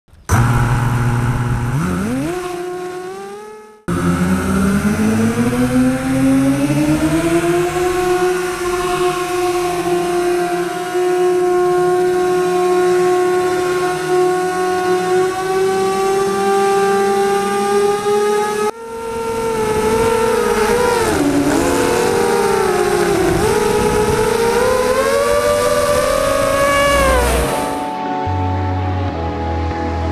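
FPV racing quadcopter's brushless motors and 6045 propellers whining, heard from on board the craft. The pitch climbs as throttle comes up and holds steady, then dips and rises again with throttle changes. The sound cuts off abruptly about 4 seconds in and again after about 19 seconds as the footage jumps.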